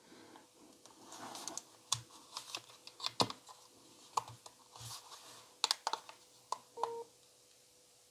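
Small plastic buttons and hold switch of a Panasonic RQ-SX30 personal cassette player clicking irregularly as they are pressed and slid, with handling rustle. A faint steady tone runs underneath, with a short brighter tone a little before the end.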